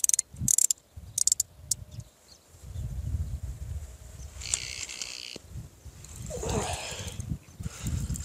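Carp fishing gear being handled as a rod is lifted off the rod pod and a crucian carp is played on it: a quick run of sharp clicks and rattles at first, then a low handling rumble, with a brief wavering whine near the end.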